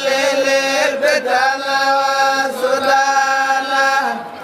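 Zikr, Islamic devotional chanting: voices holding long sustained notes that slide between phrases. The chant breaks off abruptly near the end.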